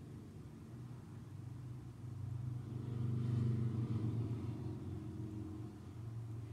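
A low rumble over a steady hum, swelling about two seconds in, peaking around the middle and easing off again.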